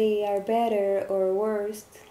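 Speech: one person talking in a small room, stopping shortly before the end.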